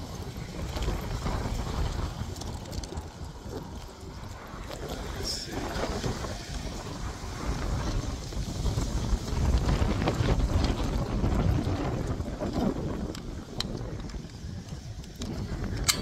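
Wind buffeting the microphone, a low rumble that swells and fades, with scattered small clicks and knocks of something being handled.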